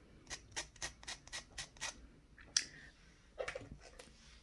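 Nail buffer block rubbed back and forth over a fingernail in quick, even strokes, about five a second, roughening the nail to remove its shine so the press-on will adhere. The strokes stop about two seconds in, followed by a single brief sharper sound.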